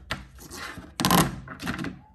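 Silicone suction-cup fidget strip being pulled off a hard surface, its little suction cups popping in quick crackly clusters, the loudest cluster about a second in.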